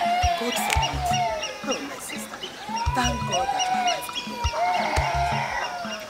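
Film soundtrack music: a gliding melodic line with long held notes over a repeating low beat.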